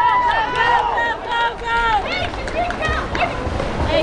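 Several voices shouting and yelling over one another, dense in the first two seconds and thinning after, over the splash of swimmers sprinting in a water polo game.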